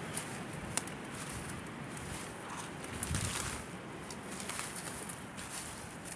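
Footsteps through dry leaf litter on a forest floor, with a few sharp twig snaps and a louder rustle about three seconds in.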